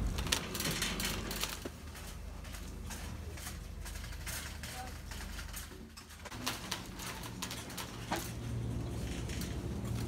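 Supermarket ambience: a low steady hum with scattered clicks and rattles from handling and a shopping cart, and faint voices in the background.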